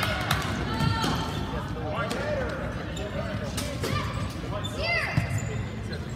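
Indoor soccer in a gym hall: sneakers squeaking on the court floor, the ball thudding off feet and the floor, and voices calling out over the echoing room.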